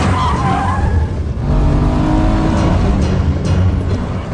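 Car-chase sound effect from a cartoon soundtrack: a car engine running hard under a heavy low rumble, with a brief tire squeal at the start.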